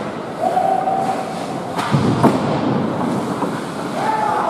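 Indoor ice hockey game sound: steady scraping of skates on the ice with the hum of a rink crowd, a long held shout near the start, and a single sharp crack about two seconds in.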